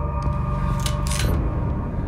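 A handgun being drawn and readied: two short sharp metallic clicks about a second in, over a low steady drone.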